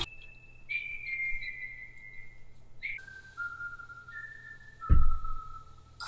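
Someone whistling a slow tune in long held notes that step downward in pitch, with a low thud about five seconds in.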